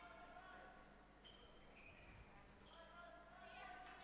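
Near silence: faint sound of the handball match in the hall, with distant voices near the end.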